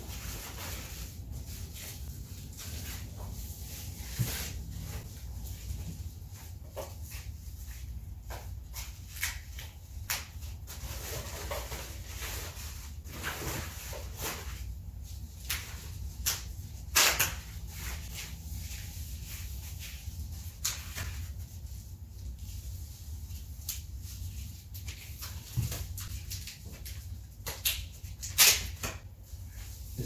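A protective wrap being pulled off a floor-standing speaker, rustling and crinkling in irregular bursts, with sharper, louder rustles at about 17 s and again near the end.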